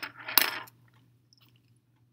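A brief clatter of wooden pencils knocking together as they are handled, with one sharp click, in the first moments; then only a faint steady hum.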